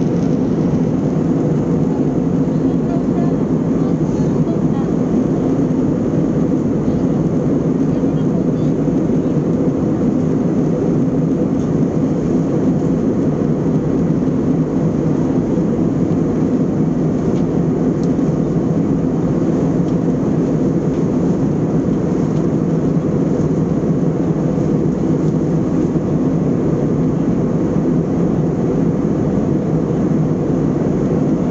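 Steady cabin noise of an airliner in flight: an even rush of air and engine drone with a low hum, unchanging throughout.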